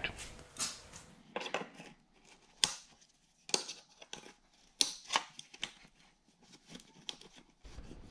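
Hands working a metal scissor-type fuel line disconnect tool against the steel fuel lines at an engine's fuel rail: a series of sharp, irregularly spaced metal clicks and light rattles.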